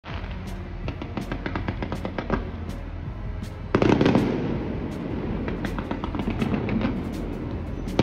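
A fireworks display: a constant crackle of small pops, with a louder, denser burst about four seconds in. Music plays underneath.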